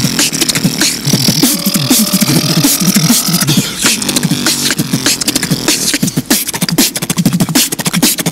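Two beatboxers performing together, hands cupped over their mouths: a fast stream of vocal kick, snare and hi-hat clicks over deep hummed bass notes. A held, slightly rising higher note runs through the first half.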